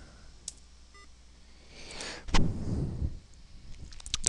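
A short, faint electronic beep from the computer, several tones at once, about a second in, just after a single click: a weird sound.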